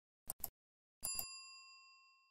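Mouse-click sound effects, a quick pair of clicks, then another pair about a second in followed by a bright bell ding that rings and fades out: a like-and-subscribe notification-bell sound effect.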